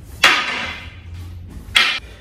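Two sharp wooden knocks about a second and a half apart: a hanbo, a short wooden staff, striking a long wooden staff.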